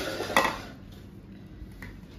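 Metal spoon clinking against a stainless steel bowl: one sharp clink about half a second in, then a few faint knocks.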